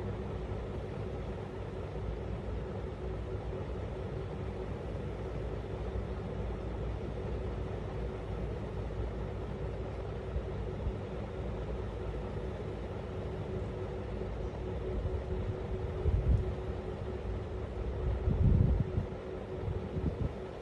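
Steady low mechanical hum and rumble with a constant faint tone, with two short low bumps near the end.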